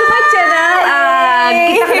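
Women's voices in a high-pitched, drawn-out sing-song exclamation, the pitch sliding up and down on long held notes.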